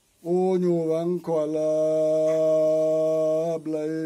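An elderly man chanting unaccompanied: a short phrase, then one long note held steady for over two seconds, then a new phrase begins near the end.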